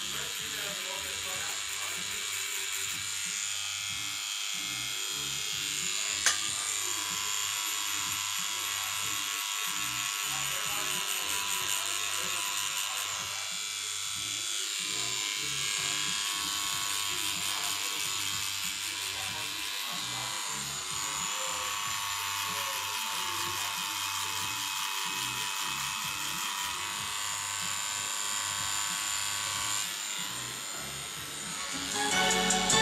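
Electric tattoo machine buzzing steadily as the needle works into the skin, with one sharp click about six seconds in.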